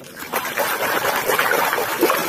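Water splashing and sloshing continuously as a muddy plastic toy truck is swished rapidly back and forth by hand in a pool to wash the mud off.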